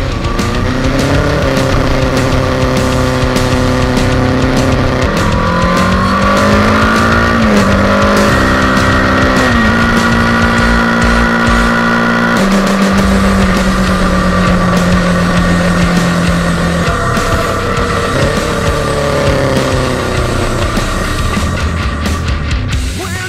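Kawasaki ER-6n's 649 cc parallel-twin engine running at road speed: its pitch rises as it accelerates, holds steady for stretches while cruising, and drops abruptly a little past halfway. Music is mixed in underneath.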